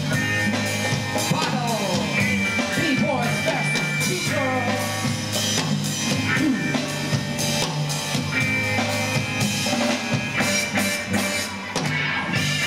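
A live band plays a groove on drum kit and bass, with cymbal strokes and lead notes that slide down in pitch.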